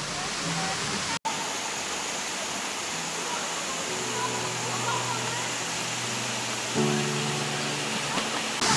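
Waterfall pouring into a plunge pool, a steady rush of water, broken by a momentary dropout about a second in.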